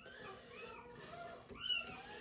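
Faint, repeated arched calls of an animal in the background, with a couple of light clicks near the end.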